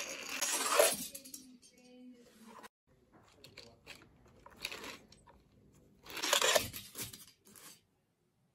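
Plastic toy train and track being handled by hand: irregular scraping and rustling bursts as a toy engine is pushed along a plastic ramp, the loudest about six seconds in.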